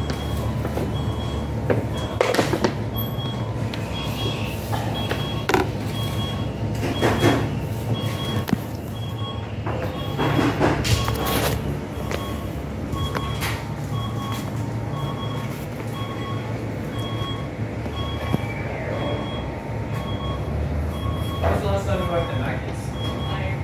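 Electronic beeping, a short two-tone beep repeating about twice a second, over a steady low hum, with a few sharp knocks and clatters among it.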